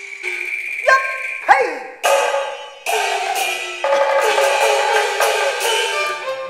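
Cantonese opera instrumental passage of struck percussion: a series of accented strokes with ringing, pitched decays, one of them bending in pitch about a second and a half in, over the ensemble.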